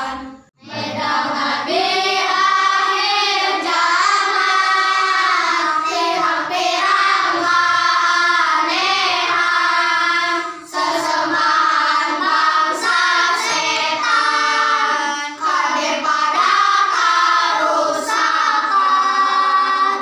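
A mixed group of young children singing a Sundanese devotional nadzom in praise of the Prophet together in unison, with brief pauses a moment in and again about ten and fifteen seconds in.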